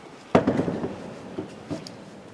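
A sudden loud thump about a third of a second in, fading over about half a second, followed by two smaller knocks near the end.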